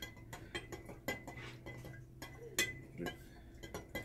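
A stirrer clinking irregularly against the inside of a glass jar of water as oxalic acid crystals are stirred in to dissolve.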